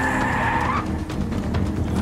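Cartoon vehicle sound effect of a robot vehicle speeding along. A hissing sweep falls in pitch over the first second, over the show's music score.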